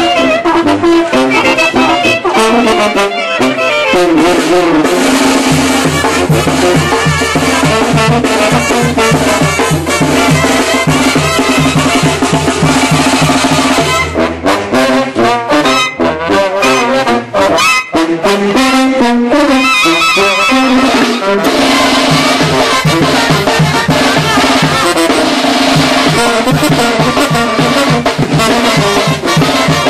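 A street brass band playing: sousaphone, trumpets, trombones and clarinet over snare and bass drum, with a steady low pulse. The music breaks off about halfway through and another passage starts.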